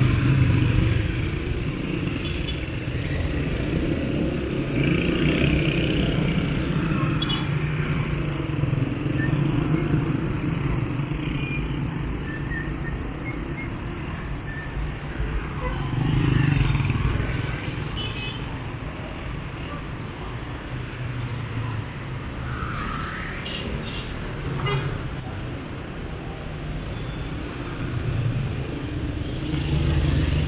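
City road traffic: cars and motorcycles passing, their engines swelling as each goes by. The traffic is loudest near the start, about halfway through, and again near the end.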